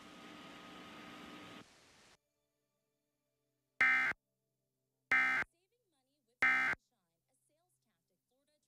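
Emergency Alert System end-of-message code: three short, identical electronic data bursts, each under half a second and a little over a second apart, starting about four seconds in, marking the close of the alert. Before them a faint hiss fades out within the first two seconds.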